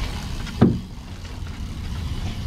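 Boat engine running with a steady low rumble, with one sharp thump a little over half a second in.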